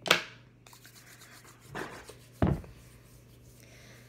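Hands being rubbed together with hand sanitizer, with a sharp short sound right at the start and a heavy thump a little after halfway through.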